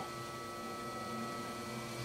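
Faint steady electrical hum, with a few thin steady high tones over it.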